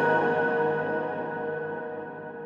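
The dying tail of a record label's intro sting: a sustained ringing chord of several steady tones fading slowly, its higher notes going first.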